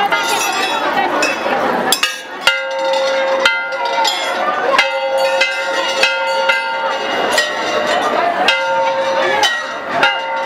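Large brass temple bells struck again and again by devotees. From about two seconds in, strike follows strike, each ringing on at several steady pitches so that the tones overlap, over the chatter of a packed crowd.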